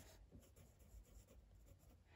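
Faint scratching of a pen writing on paper in a notebook.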